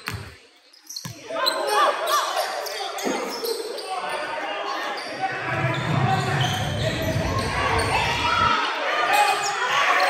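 A basketball being dribbled on a hardwood gym court, with shouting voices echoing through the large hall. There are a few sharp bounces near the start, then a steady din of voices.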